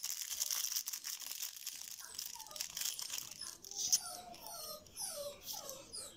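Trading cards and foil booster-pack wrappers rustling and crinkling as they are handled. From about two seconds in there are several faint, short falling whines.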